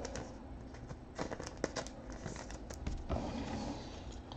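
Faint scattered clicks and light rustling of plastic card top loaders and sleeves being handled, with a few slightly sharper clicks in the middle.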